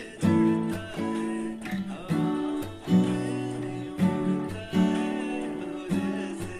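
Acoustic guitar, capoed at the second fret, strumming chords in a down-chuck pattern: ringing chords, each struck with a sharp attack roughly once a second, broken by short muted percussive chuck hits.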